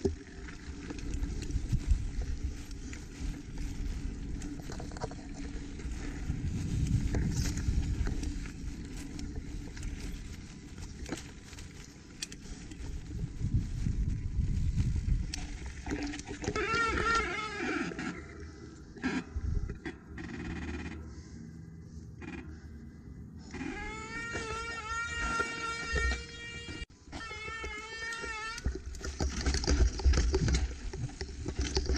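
Mountain bike rolling down a rough dirt trail: tyre and wind rumble with constant clicks and knocks from the frame and chain over bumps. A wavering high-pitched squeal, typical of disc brakes under hard braking, comes in briefly about halfway through and again for several seconds near the end.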